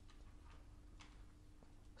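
Near silence: room tone with a faint steady hum and a few faint, irregular ticks.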